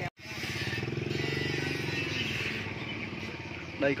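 A small motorcycle engine runs steadily at a low, even pitch, fading a little in the second half.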